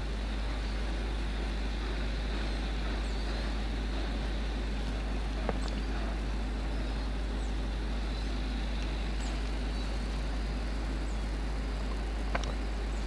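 Steady background noise, an even hiss over a constant low hum, with a faint click about five and a half seconds in and a few faint high chirps.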